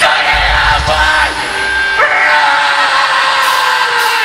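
Live heavy band playing loudly through a PA: sustained guitar tones, one falling slowly, over a deep bass rumble.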